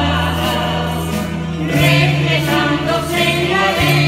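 Canarian folk group performing: voices singing together over strummed guitars, with a low bass line that moves to a new held note about two seconds in.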